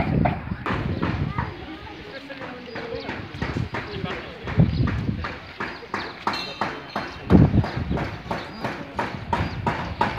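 Footsteps on wet stone paving, a steady walking rhythm of sharp taps.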